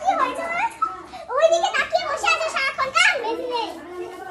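Speech only: children's high voices talking.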